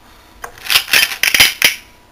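Small base 10 unit cubes clinking and rattling against a cut-glass bowl as a hand scoops them out: one click, then a quick run of clattering for about a second.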